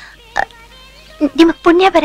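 A voice speaking a few short syllables, with faint background music underneath.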